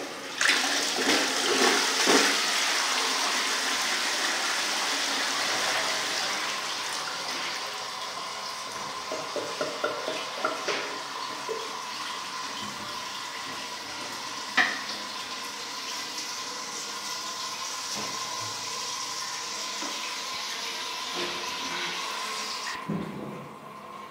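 A 2004 wall-hung Armitage Shanks Melrose toilet being flushed: a sudden rush of water about half a second in, loudest over the first couple of seconds, then a steadier run of water with a faint steady whistle, which stops about a second before the end.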